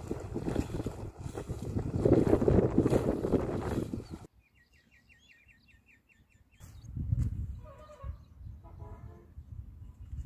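Sloshing and splashing of legs wading through shallow river water for about four seconds; it cuts off suddenly. A short trill of quick, evenly repeated high chirps follows, then a low rumble.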